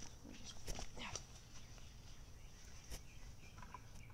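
Faint outdoor ambience: a steady high whine runs throughout, with a few faint short calls in the first second and some light ticks.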